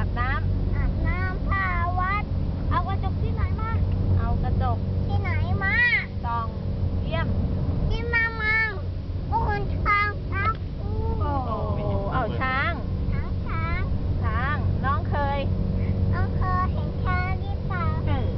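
A toddler singing in a high voice that rises and falls, over the steady low hum of the car's engine and road noise inside the cabin.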